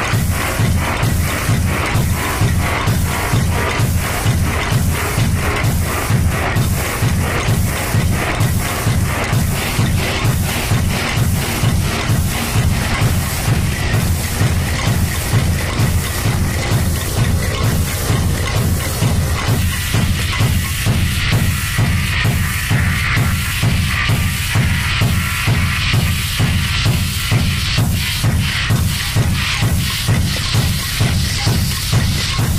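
Looped electronic percussion music with a fast, steady beat, built from struck spray paint cans recorded and looped live by a Max patch. About two-thirds of the way through, the middle sounds drop away, leaving the low beat and brighter high sounds.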